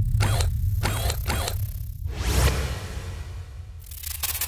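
Sound-design effects for an animated logo intro: three quick mechanical sound effects in a row, a whoosh about two seconds in, and a burst of glitchy crackle near the end, all over a deep bass rumble that slowly fades.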